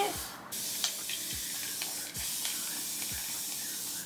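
Hand spray bottle of water misting steadily onto hair: one long, even hiss with a brief break just after the start.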